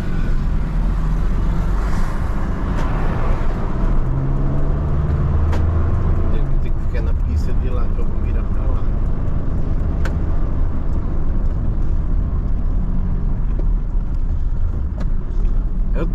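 Mercedes-Benz Sprinter van's diesel engine and road noise heard from inside the cab while driving, a steady low rumble that is heaviest in the first few seconds as the van gets moving.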